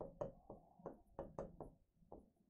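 Chalk tapping against a chalkboard while writing: about eight faint, sharp, irregular taps as the strokes of letters go down.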